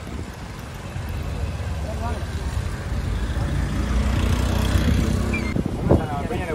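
Low rumble of a motor vehicle's engine swelling louder over several seconds, then falling away sharply just before the end, under the scattered voices of a crowd.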